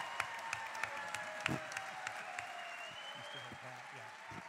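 Theatre audience applauding, with the claps dense at first and thinning out as the applause dies down.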